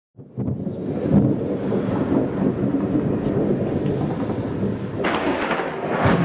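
Thunder rumbling continuously, with a sudden, sharper crack about five seconds in.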